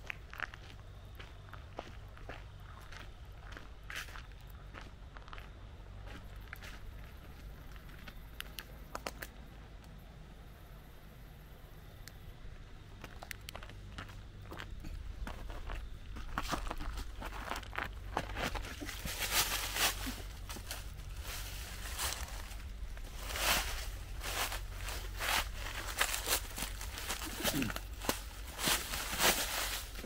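Footsteps, sparse and quiet at first, then from about halfway a steady run of crunching steps through dry fallen leaves.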